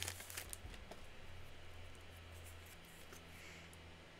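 Foil trading-card booster pack wrapper crinkling and tearing as it is pulled open, faint and over within the first second, followed by a low steady hum.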